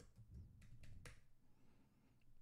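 A few faint computer keyboard keystrokes as a password is typed, separate short clicks in the first second or so against near silence.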